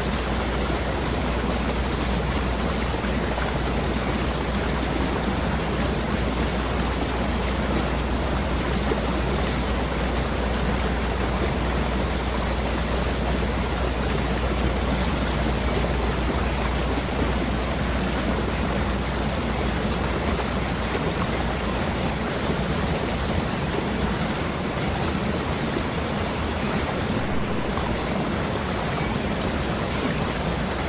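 A bird repeating a short, high chirping call about every three seconds over a steady outdoor hiss.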